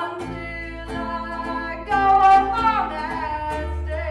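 Live acoustic folk-band music: a strummed ukulele and an acoustic bass guitar under singing, with a loud held note about halfway through.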